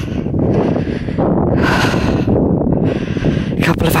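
Wind buffeting the camera's microphone: a loud, uneven low rumble with gusty swells in the hiss above it.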